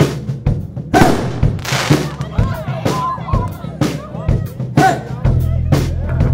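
Live rock band: a drum kit plays a steady beat with cymbal crashes, with a voice over it. Near the end, sustained bass and guitar notes come in under the drums.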